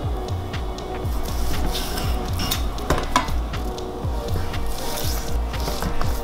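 Background music with a steady beat. A few faint knife taps on a wooden cutting board come about halfway through, as ribeye is cut into cubes.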